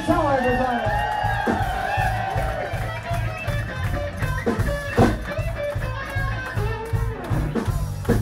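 Live blues-rock band playing loud: electric guitar, bass and drum kit, with held, bending notes over a steady low beat.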